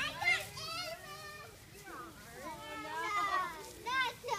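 Children playing: several high-pitched children's voices calling and chattering over one another.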